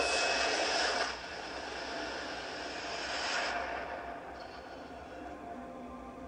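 Music-video soundtrack playing in the room: a loud rushing whoosh that drops back after about a second, then a softer airy hiss that fades further about three and a half seconds in, with a few faint held tones underneath.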